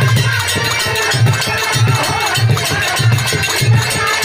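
Live accompaniment music from a Birha stage performance: a steady low drum beat, roughly one and a half beats a second, under a dense mix of other instruments.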